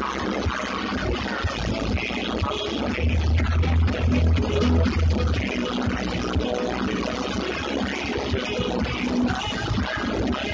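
Music playing on a truck's stereo, heard inside the cab, with a strong bass part coming in about three seconds in and easing off a couple of seconds later.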